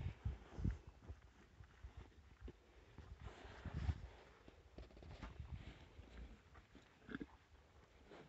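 Zebu cattle eating ground feed from a wooden trough: irregular soft chewing and muzzle rustling in the feed, a little louder about half a second in and near four seconds.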